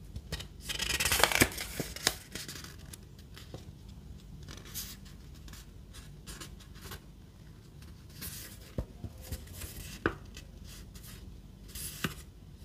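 Paper product leaflet being handled and unfolded: a loud rustle of paper about a second in, more rustling around eight to nine seconds, and a few light crisp clicks of the paper against the fingers.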